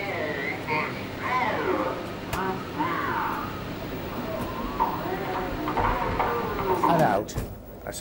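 Speech recorded on a reel-to-reel videotape, played back as the reel is wound through by hand, so it comes out garbled. The voices slide up and down in pitch as the speed changes, with a long downward swoop near the end.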